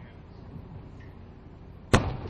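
A ceremonial saluting cannon firing one round of a mourning salute: a single sharp, loud bang near the end, over a steady low background rumble.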